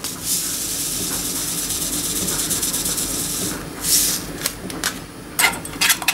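Vanilla sugar poured from a paper sachet into a pot of kiwi purée, a steady grainy hiss lasting about three and a half seconds, with a short burst of the same hiss near four seconds. Near the end a metal spoon clinks against the stainless steel pot as stirring begins.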